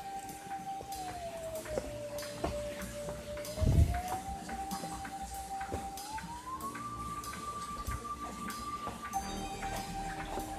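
Background music: a single sustained electronic tone that glides slowly between a few pitches, first dipping and then rising to a higher note, over faint ticking. A brief low thump about four seconds in is the loudest moment.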